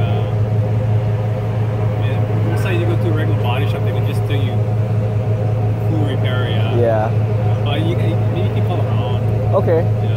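Tow truck's engine idling with a steady low drone.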